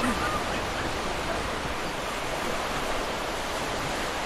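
Steady rushing noise of wind and gentle surf along a shallow sandbar, with wind rumbling on the microphone.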